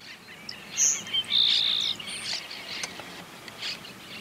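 Grassland sparrow (cachilo ceja amarilla) singing: a short, very high note, then a steady high note held for about half a second, a little over a second in. Other thin high chirps and insect calls sound throughout.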